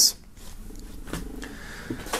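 Quiet handling of a cotton face mask on a table, with a soft click a little over a second in and a faint low hum.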